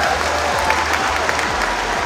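Audience applauding: the steady clapping of many hands.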